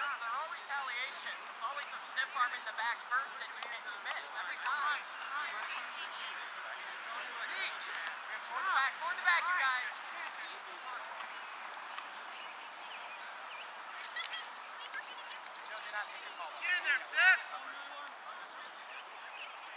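Distant shouting voices of players calling across an open soccer field, in short bursts, strongest about halfway through and again near the end.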